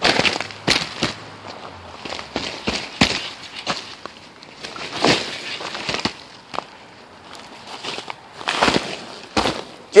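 Footsteps crunching through snow and ice underfoot, a string of irregular sharp crunches and crackles.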